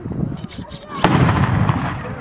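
Carbide cannon going off: a milk churn charged with calcium carbide and water fires with a single loud bang about a second in, as the acetylene inside is ignited, and the bang rings on afterwards.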